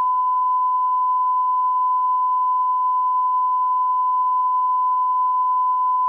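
A steady electronic test tone, one unchanging high pitch, held at a constant level throughout.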